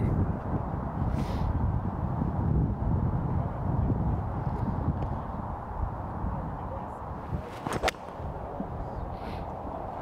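A golf iron striking a ball once, a single sharp, crisp click near the end, from a solidly struck shot, a good strike. It sits over a steady low outdoor rumble.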